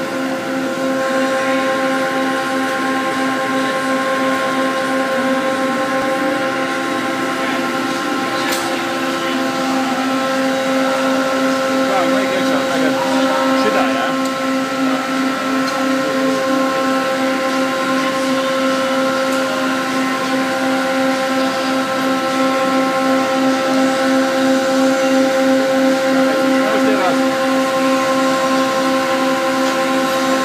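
A loud, steady machine hum: one low note with a regular pulse and a row of higher overtones above it, running without a break.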